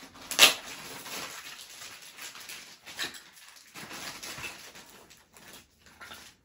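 Plastic toys and packaging being handled: scattered light knocks and rustles, with a sharp clack about half a second in and a smaller one about three seconds in.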